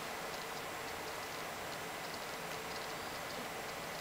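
Quiet room tone: a steady low hiss with a few faint, scattered ticks.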